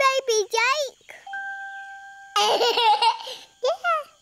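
A baby babbling and laughing in short high-pitched bursts. Near the middle, a steady whistle-like tone holds for about a second.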